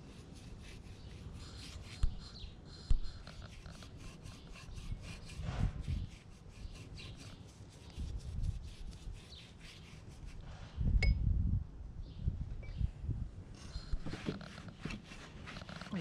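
Flat paintbrush scrubbing a sage-green color wash onto rough, weathered cedar in many quick back-and-forth strokes, a scratchy rubbing. A couple of sharp low knocks about two and three seconds in, and a short low rumble about eleven seconds in.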